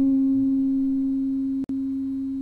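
Electric guitar holding one sustained note, a smooth, nearly pure tone slowly fading away. The note cuts out for an instant with a click about one and a half seconds in, then carries on.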